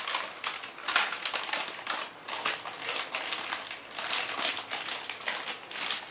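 Clear plastic packaging crinkling and crackling in quick, irregular bursts of sound as it is handled and pulled at.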